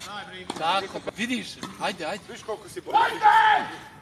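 Men talking excitedly, with one loud drawn-out shout about three seconds in. A few sharp knocks are heard between the words.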